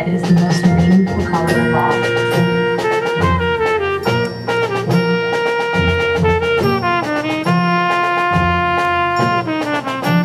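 High school marching band playing: the brass section swells in on sustained, shifting chords about a second and a half in, over low drum hits and front-ensemble percussion.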